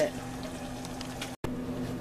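Shrimp scampi sauce simmering in a skillet on the stove: a steady bubbling hiss with a low hum beneath it, broken by a sudden short gap about a second and a half in.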